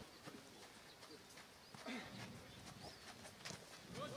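Near quiet: a few faint, scattered knocks and a brief faint voice about two seconds in.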